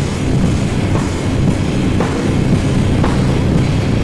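A thrash/groove metal band playing live: distorted electric guitars, bass and a drum kit, loud and continuous, with most of the weight in the low end.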